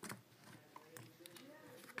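Near silence: faint ticks and slides of Yu-Gi-Oh! trading cards being handled and flipped through by hand.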